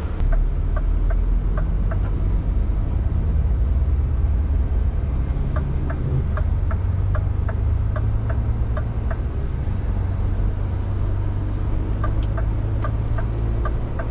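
Scania truck's diesel engine running in the cab while driving, a steady low rumble. Over it a turn-signal indicator ticks about three times a second in three runs, early on, from about five to nine seconds in, and again near the end, as the truck moves into a U-turn lane.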